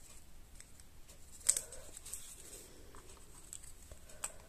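Cardstock paper being handled: faint rustling and small taps as paper leaves are slipped in between paper flowers on a wreath, with one sharper crackle of paper about a second and a half in.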